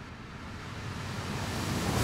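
A soft, even rush of noise that swells gradually louder in the gap between music, like a whoosh transition effect.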